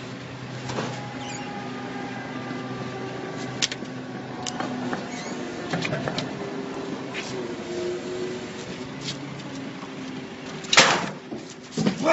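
Scattered clanks and knocks of parts being pulled and wrenched by hand in a car's engine bay, over a steady low hum, with one loud bang near the end.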